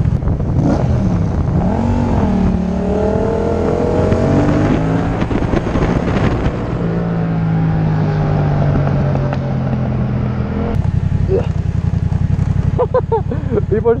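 Yamaha FZ-07 parallel-twin motorcycle engine running under way, its pitch rising as it accelerates, then holding steady while cruising and changing about three-quarters of the way through. Wind rushes over the helmet-mounted microphone.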